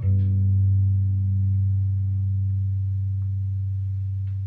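A guitar chord struck once and left to ring, fading slowly.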